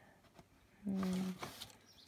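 A woman's voice: one short, held vocal sound at a steady pitch about a second in, lasting about half a second, like a drawn-out 'mmm' between remarks.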